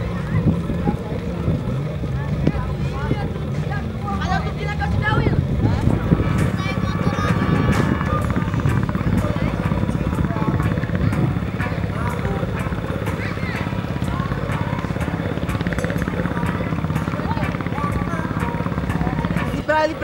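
Indistinct voices of children over a steady low hum, with music mixed in.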